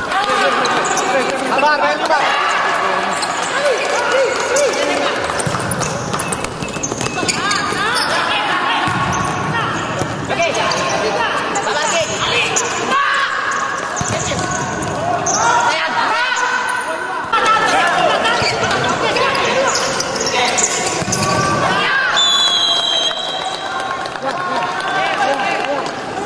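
Live sound of an indoor futsal match in a large, echoing hall: the ball being kicked and bouncing on the hard court, with players shouting to each other throughout.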